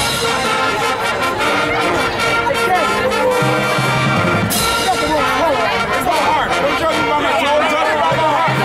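High school marching band playing its halftime show: brass ensemble holding chords over percussion.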